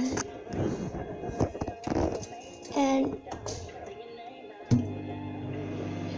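Microwave oven switched on with a sharp click about three-quarters of the way through, then running with a steady low hum. Before that, scattered knocks and clicks from the door and timer dial being handled.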